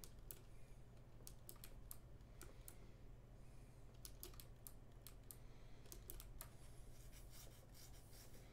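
Near silence: faint, irregular clicks of computer keys over a low steady hum.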